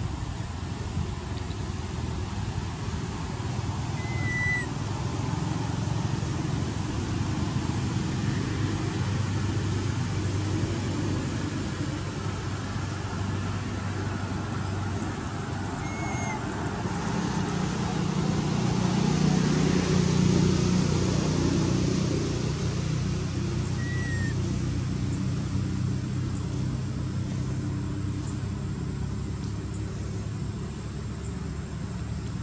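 Outdoor background noise: a steady low rumble like distant traffic, which grows louder for a few seconds after the middle. Three brief high chirps sound over it, spaced several seconds apart.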